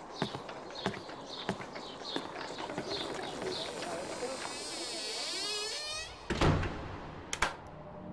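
Steady footsteps on a hard floor, under two a second, fade out over the first few seconds. A long wavering creak follows as a door swings to, ending in a dull thud about six seconds in.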